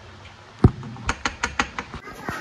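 Hard kitchen objects clicking and knocking: one sharp knock about two-thirds of a second in, then a quick run of six or seven light clicks in under a second.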